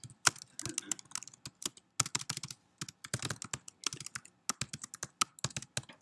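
Typing on a computer keyboard: a quick, irregular run of key clicks as a line of code is entered.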